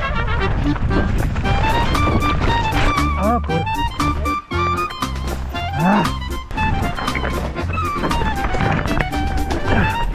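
Background music with a steady low beat and a lively melody line with sliding notes.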